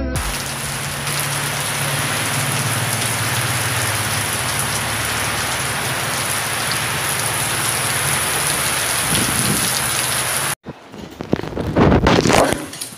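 Steady heavy rain pouring down, an even hiss of downpour. It cuts off abruptly about ten and a half seconds in, followed by a few brief, louder knocks and rustles near the end.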